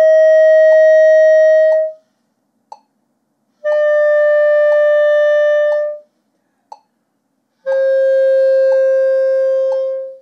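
Clarinet playing three held notes, each a step lower than the last, about two seconds each with rests between. The notes are overtones started with an air attack alone, with no tongue and no register key. Soft ticks keep time about once a second underneath.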